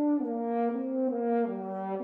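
Wind quintet of flute, oboe, clarinet, French horn and bassoon playing sustained notes together, the lowest part stepping downward in pitch.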